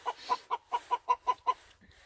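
A hen clucking in a quick run of short clucks, about six a second, stopping about a second and a half in.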